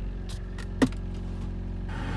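2006 Toyota Corolla engine idling steadily, heard from inside the cabin, with a single sharp click a little under a second in.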